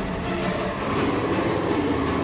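Electric drive motor and gearbox of a Bruder MACK toy tow truck converted to radio control, running steadily as the truck crawls over dirt and grass.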